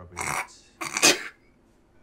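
Two short, breathy bursts of a person's non-speech voice sound, such as coughs, the second one louder.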